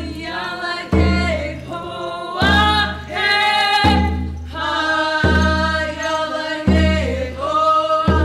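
A group singing a Haida dance song in unison, long held notes over a deep drum beat that falls about every second and a half.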